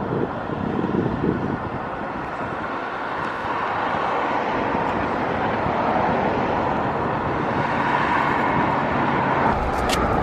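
Steady rushing noise of ocean surf breaking on the beach.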